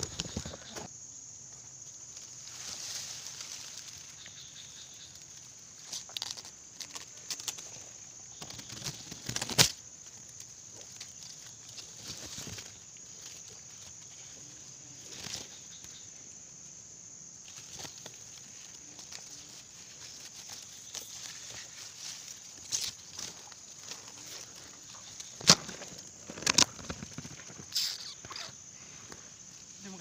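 Rustling and handling as dry reeds and grass are pushed aside by hand, with a few sharp knocks, over a steady high-pitched insect chirring.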